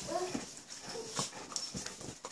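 Pets play-fighting on a bed: a few short, faint whimpering cries near the start and again about a second in, with soft scuffling knocks.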